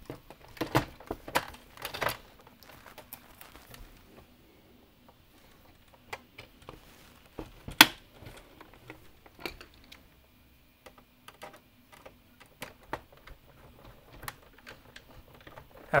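Hard plastic parts of a Nerf Rival Nemesis blaster being handled and fitted together as the safety lock trigger is reinstalled: scattered small clicks and taps, with one sharp click about eight seconds in.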